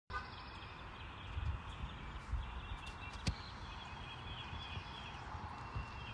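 Birds chirping in repeated short trills over a low, uneven rumble, with a single sharp click about three seconds in.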